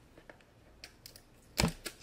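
Hard plastic toy capsule being handled: scattered light clicks, a sharp knock about one and a half seconds in, then a quick run of small clicks.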